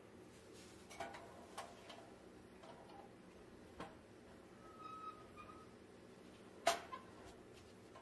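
Faint handling of an old pressed-steel toy truck: a few light metallic clicks and taps, the loudest about two-thirds of the way through, with a brief faint whistle-like tone near the middle.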